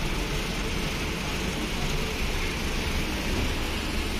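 Steady noise of a running tunnel car wash machine as a car rolls off its conveyor at the exit.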